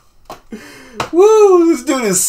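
A break in the music: a couple of sharp clicks, then one short drawn-out vocal sound that rises and falls in pitch.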